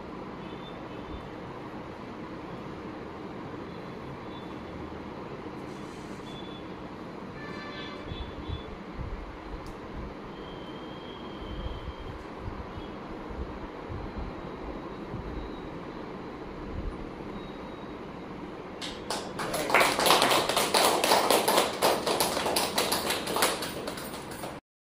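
A small group clapping for about five seconds near the end, loud and dense, over a steady background hiss of the room; a few dull low thuds come before it.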